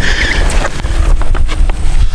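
Wind buffeting the microphone: a loud, steady rush with a fluttering low rumble, with a couple of light knocks.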